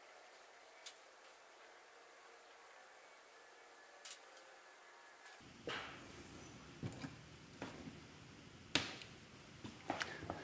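Faint bench handling sounds: near silence with a couple of small ticks, then from about halfway a handful of light clicks and knocks as a soldering iron is set back into its coiled metal holder on a helping-hands stand. The sharpest knock comes shortly before the end.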